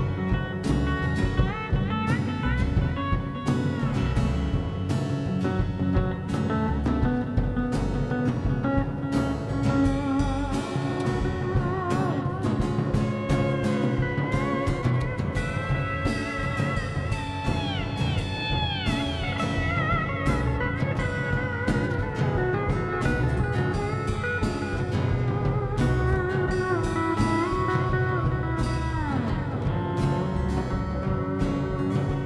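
Live band playing an instrumental break: strummed acoustic guitar, electric guitar and drum kit, with a lead line of sliding, bending notes.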